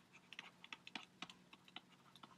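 A string of faint, irregular light clicks and taps from a stylus on a pen tablet while handwriting is written.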